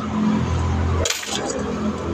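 Loose coins clinking a few times as they are handled and sorted by hand on a concrete floor, over a steady low rumble.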